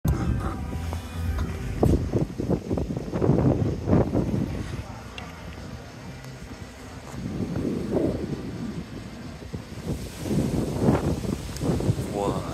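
Indistinct voices with music, with a quieter stretch in the middle.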